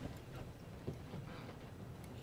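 Faint clicks and handling noise from fly-tying tools and materials at the vise, with one small tick about a second in.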